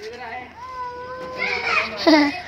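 Children's voices some way off, with one long drawn-out call in the middle.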